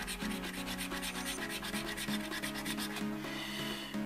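A coin scraping the silver latex coating off a paper scratchcard in rapid back-and-forth strokes.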